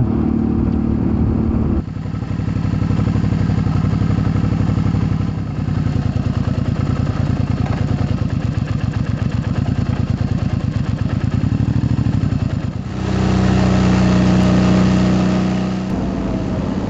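2008 Suzuki V-Strom 650's V-twin engine, fitted with an aftermarket Delkevic exhaust, running as the bike is ridden, its pitch shifting with the throttle. The engine sound changes abruptly about two seconds in and again about three seconds before the end.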